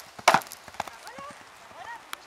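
A single sharp wooden knock about a quarter second in, as a pony clears a show-jumping vertical: a hoof rapping the fence's wooden pole.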